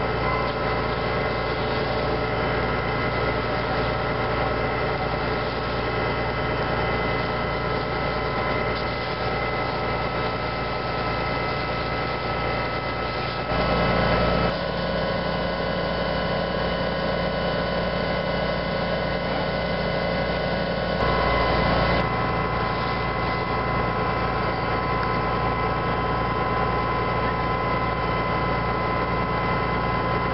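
Fire engine's motor running steadily at constant speed, driving its water pump for the hose line. There are brief shifts in pitch and level about 14 seconds in and again about 21 seconds in.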